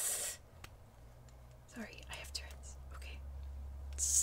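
A woman's breathy, whispered vocal sounds during a Tourette's tic: a short hiss right at the start and a brief soft murmur about two seconds in, over a low steady hum.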